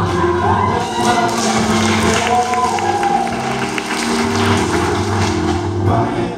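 Men's chorus singing held chords in close harmony. Over the first five seconds an audience cheers and whoops.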